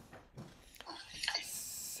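Faint, low-level voice sounds and a few clicks between sentences, ending in a short breathy hiss about a second and a half in, just before speech starts again.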